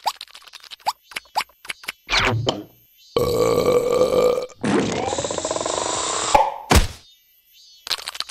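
Cartoon sound effects with character grunts: a run of quick clicks, a falling squeak about two seconds in, then two long stretches of hissing noise, the second with a rising whine, ending in a sharp hit near seven seconds.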